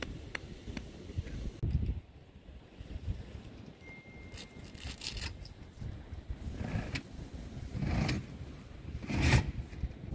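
Wind buffeting a phone's microphone outdoors, an uneven low rumble, with a few brief rustles and scrapes of handling; the loudest comes near the end.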